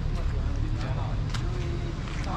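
Street ambience: a steady low rumble of road traffic, with people's voices talking nearby.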